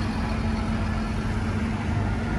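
LPG-fuelled Toyota forklift's engine running steadily as the forklift drives off and turns.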